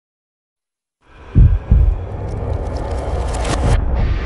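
About a second of silence, then an advert's sound design: a deep heartbeat-like double thump over a low steady drone with a hiss on top, building toward the end.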